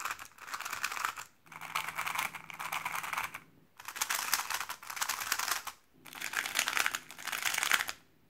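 Magnetic 3x3 speed cubes turned fast by hand: a dense patter of light plastic clicks and rustles, in runs of about two seconds with short silent breaks between them. The cubes compared are the X-Man Tornado V2 M, which is really quiet, then the MoYu WeiLong WR M 2021 and the MoYu RS3 M 2020.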